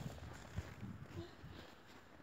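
Quiet outdoors with faint, irregular soft thuds of footsteps in snow.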